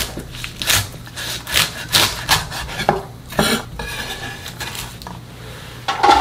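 Kitchen knife cutting through a bundle of Korean water dropwort (dol-minari) stems on a wooden cutting board, trimming off the stem ends: a run of irregular sharp cuts and knocks of the blade on the board, thinning out near the end.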